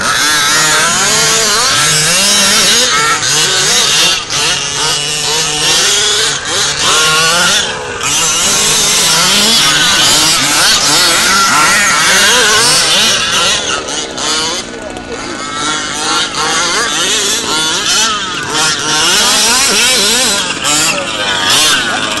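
Several radio-controlled buggies racing on sand, their small engines buzzing and revving up and down in pitch, overlapping, with short dips as they let off.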